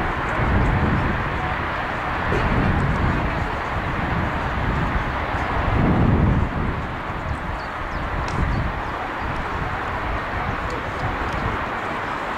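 Wind buffeting the microphone in gusts over a steady outdoor hiss, the strongest gust about six seconds in.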